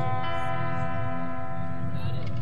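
Live band music: a guitar note is held and rings on steadily over a low bass line.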